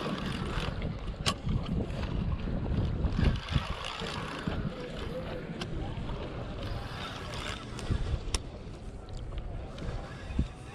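Wind and handling noise rubbing on a body-worn camera's microphone, a steady low rumble with a few sharp clicks spread through it.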